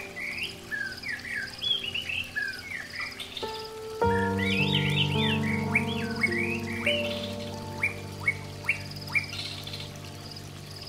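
Birds chirping over and over in short sweeping notes, laid over soft instrumental music of long held notes. A new chord comes in about four seconds in and the music grows louder.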